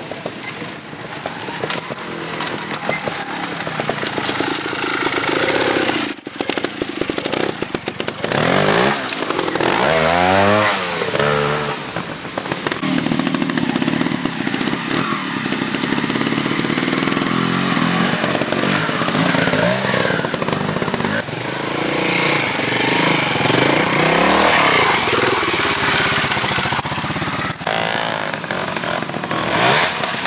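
Trials motorcycle engines revving in short bursts, the pitch sweeping up and down as the throttle is blipped to climb over rocks and roots.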